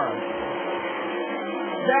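Winged sprint cars' V8 engines running at racing speed, heard as a steady drone.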